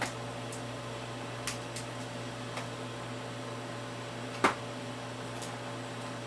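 Plastic binder pages and a sleeved trading card being handled: a few light clicks and ticks, the sharpest about four and a half seconds in, over a steady electrical hum.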